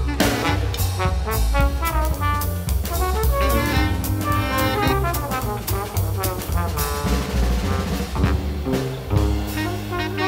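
Live jazz from a low-register band: trombone, tuba and baritone saxophone playing over upright bass and drum kit, with frequent drum and cymbal strokes.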